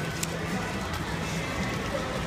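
Background din of a large indoor arena: distant crowd chatter under a steady low hum, with a few faint clicks.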